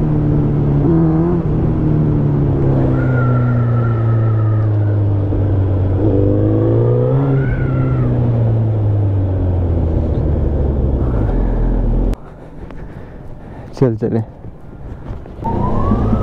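Suzuki Hayabusa's inline-four engine running on the road, its pitch sinking slowly as the rider eases off, with a brief rise in revs about six seconds in. The sound cuts off sharply about twelve seconds in, leaving much quieter road sound.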